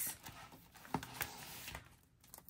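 Faint handling of a peeled clear sticker and its plastic backing sheet: a light rustle, then a couple of soft ticks about a second in.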